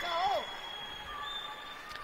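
A voice trails off with a falling pitch in the first half second, then the low background of a sports hall goes on, with a few faint thin steady tones.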